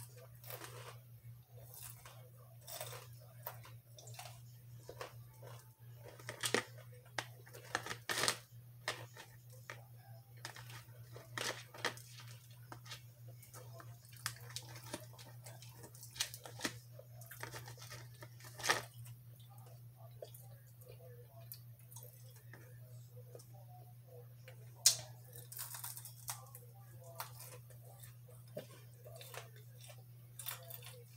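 A person chewing and eating sweet potato fries close to the microphone: many short, irregular clicks and mouth sounds over a steady low hum. One sharp click late on is the loudest.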